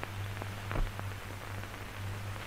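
Hiss and steady low hum of an old film soundtrack in a pause of its narration, with a few faint clicks.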